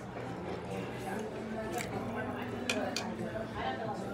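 Indistinct background chatter of people talking in a busy restaurant, with a few light clicks scattered through it.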